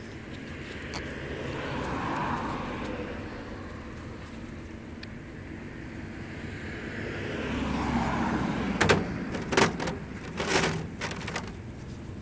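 Road traffic going by, a swell of vehicle noise that rises and fades twice, followed near the end by a few sharp knocks and clatters.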